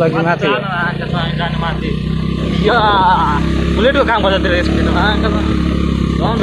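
A motorcycle engine running steadily on the move, with people's voices talking over it in bursts.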